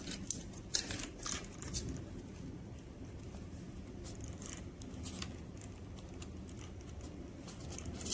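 Faint clicks and light handling of a plastic servo-lead plug and a mini RC receiver as they are fitted together by hand, several in the first two seconds and a couple more about five seconds in, over a low steady hiss.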